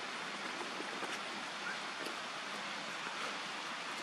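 Steady outdoor background hiss with no clear single source, marked by a few faint ticks.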